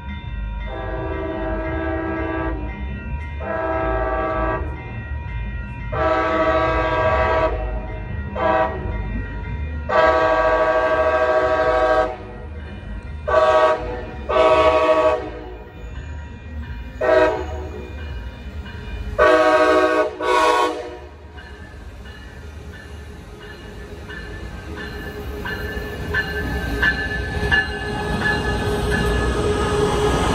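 Approaching Coaster commuter train sounding its horn for the grade crossings: about nine chords, long and short, with the last one around twenty seconds in. Its rumble then builds steadily as the train draws up to the platform near the end.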